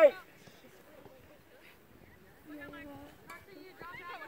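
Voices on a soccer field: a close shout cuts off at the start, then faint distant calls from players, with one drawn-out call about two and a half seconds in.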